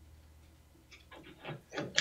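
Quiet room tone with a steady low hum; in the second half, a few faint short clicks and murmurs just before speech starts.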